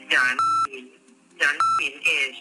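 Two short electronic beeps, each coming right after a brief burst of voice.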